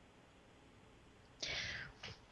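Near silence, then about one and a half seconds in a short, soft, breathy hiss: a person drawing an audible breath just before speaking.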